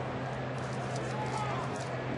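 Ballpark crowd ambience: a steady murmur of fans with scattered voices and a few faint sharp claps, over a low steady hum.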